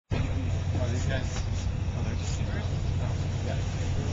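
Indistinct voices of people nearby over a steady low rumble.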